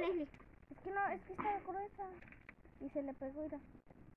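Quiet speech only: a few short, soft phrases from voices, with brief lulls between them.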